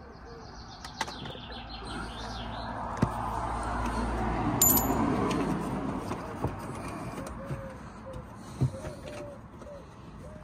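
Birds chirping in the background while a rushing noise swells over a few seconds and fades, with a few light knocks.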